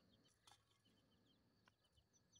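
Near silence: faint outdoor background with a few faint, high chirps and a couple of soft ticks.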